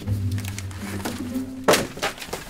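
Background music with sustained low notes, then one sharp thump near the end as a hand knocks a cardboard file box held in someone's arms, sending papers falling.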